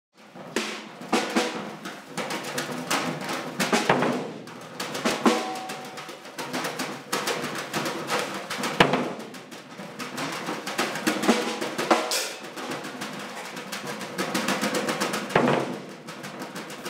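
Drum kit played freely: a dense run of uneven strokes on the drums with several ringing cymbal crashes, no steady beat, thickening into a quick roll near the end.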